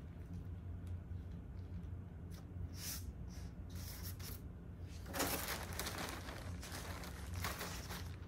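Soft rustling and crinkling of a sheet of rice paper being smoothed by hand on glue-coated glass. It gets busier about five seconds in as the paper is peeled back up off the glass. A steady low hum runs underneath.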